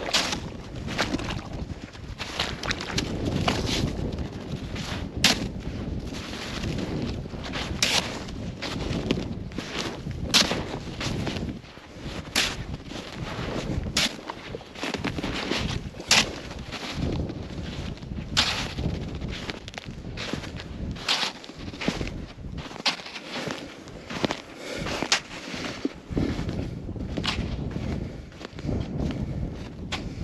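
Boots crunching through crusted deep snow, a sharp crunch every two seconds or so.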